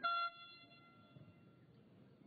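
A short, loud horn blast from the stands: one steady note that cuts off after about a quarter of a second, followed by faint crowd murmur.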